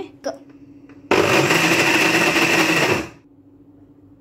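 Electric mixer grinder with a steel jar running in one burst of about two seconds. It starts about a second in and stops near three seconds, grinding biscuit powder and milk into cake batter.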